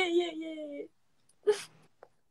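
A young woman's voice holding a drawn-out "yeah" on one steady pitch, cutting off just under a second in, followed by a short vocal sound about a second and a half in.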